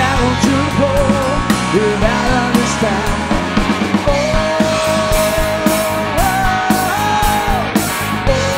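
Live blues-rock trio with an electric guitar lead on a Telecaster-style guitar, played over bass and drums. The lead line is made of bent notes, with one long sustained note held from about halfway through that is bent upward twice near the end.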